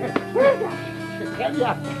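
Background film music with two short yelps like a dog's, about half a second and a second and a half in.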